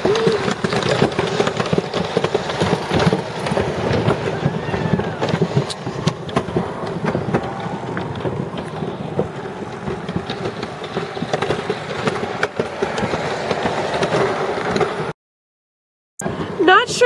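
Steady, noisy mechanical rumble of a chairlift ride, with scattered light clicks and knocks. It cuts off abruptly to silence about a second before the end.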